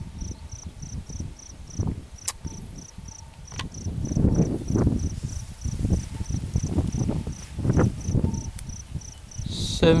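A cricket chirping steadily, short high chirps about three and a half times a second, over irregular low rumbling on the microphone.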